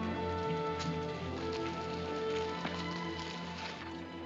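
Orchestral film score with sustained strings, over a light patter of rain.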